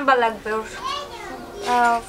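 Speech only: a high-pitched voice talking, with no other sound standing out.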